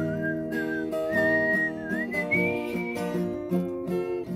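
A woman whistling a melody over her own steady acoustic guitar strumming; the whistled tune climbs in pitch and stops about three seconds in, leaving the guitar alone.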